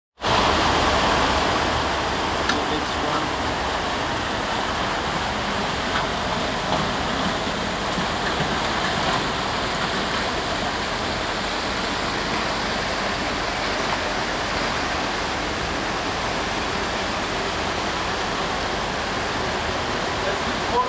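Water rushing steadily through a laboratory flume: an even, continuous noise of turbulent flow.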